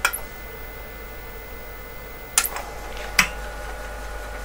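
Steady electrical hum with a faint high whine from the powered-up vintage computer setup, and two sharp clicks less than a second apart in the second half as the machine is rebooted.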